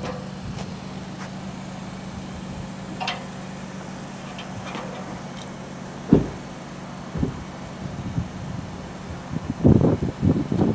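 Roofing work on a house roof: scattered sharp knocks and taps from the roofers' tools, with a loud thud about six seconds in and a quick run of knocks near the end, over a steady low hum.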